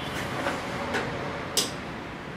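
A mains switch clicking as a 12 V battery charger is switched on for rust-removal electrolysis: a couple of faint ticks, then one short, sharp click about one and a half seconds in.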